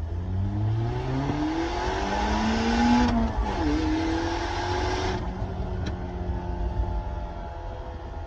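Nissan Pulsar GTi-R's turbocharged 2.0-litre four-cylinder heard from inside the cabin, accelerating with rising pitch. About three seconds in there is a short break, like a gear change, and the pitch climbs again. About five seconds in the rushing hiss cuts off and the engine settles to a steady cruise.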